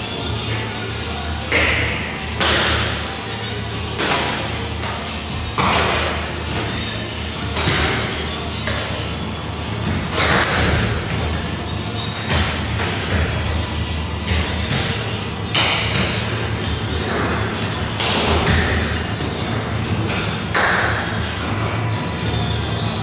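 Hand-stretched pastry dough being slapped and spread on a steel worktable: irregular thuds every second or two, over a steady low hum.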